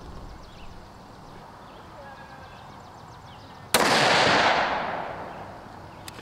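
A single rifle shot from a Tikka UPR in 6.5 Creedmoor, about two-thirds of the way in: one sharp crack with a long echo fading over about two seconds.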